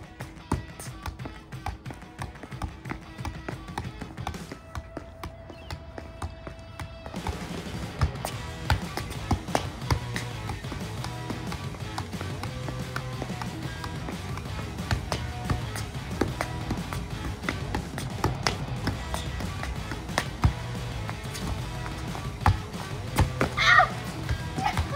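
Soccer ball being juggled: irregular taps of the ball against foot and knee, roughly two a second, over background music that fills out with a heavier beat about seven seconds in.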